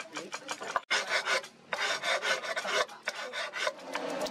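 Hand file scraping across the steel of a machete blade forged from a car leaf spring, in quick repeated strokes, with a brief break just under a second in.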